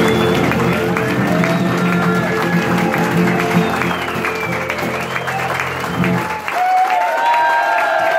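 The final chord of a live song on acoustic guitar and keyboard rings on with the audience already clapping, then cuts off about six seconds in. Applause and cheering voices from the crowd continue after it.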